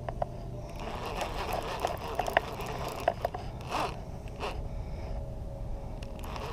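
Round baitcasting reel being cranked while reeling in a hooked fish: faint, irregular clicking and ticking from the reel's gears, with two short soft swishes about four seconds in.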